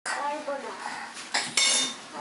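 A voice in the first second, then a sharp knock and a short, louder clatter of empty plastic tubs being knocked about near the end.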